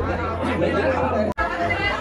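Many people talking at once in a room: overlapping crowd chatter, broken by a brief dropout a little over a second in.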